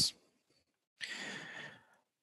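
A man's single audible breath, just under a second long, starting about a second in.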